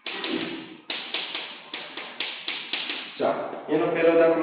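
Chalk writing on a chalkboard: a scrape, then a quick, irregular run of sharp taps, about three or four a second, as the chalk strikes the board. A man's voice comes in near the end.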